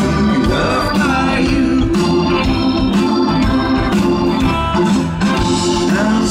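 Live rock band playing an instrumental passage, with the Hammond organ to the fore over drums, bass and electric guitars.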